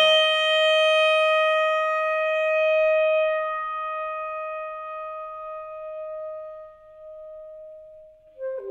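Solo saxophone holding one long note that fades slowly away, with the upper overtones dying first, until it is barely audible near the end.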